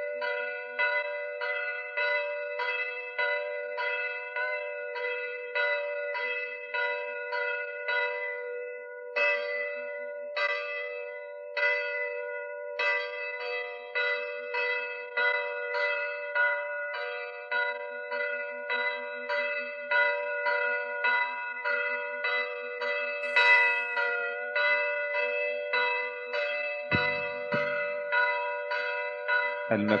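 Church bells ringing in quick repeated strokes, about two or three strikes a second, each tone ringing on into the next.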